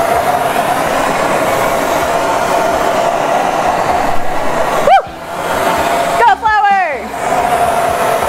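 Handheld gas torch burning with a steady hissing roar while flour is blown into its flame. The roar breaks off briefly about five seconds in, where a short whoop and an excited voice sound over it, then the hiss comes back near the end.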